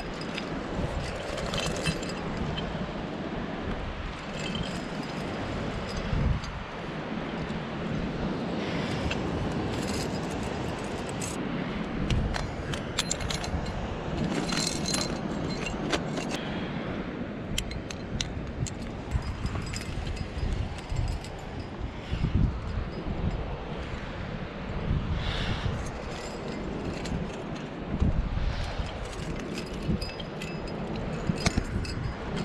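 Metal climbing gear, karabiners and quickdraws on a harness, jingling and clinking irregularly as a climber moves and places protection on granite, with scrapes against the rock. A low rumble of wind on the microphone runs underneath.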